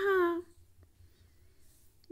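A woman's spoken word trailing off in a held vowel for the first half-second, then near silence with only a faint low hum.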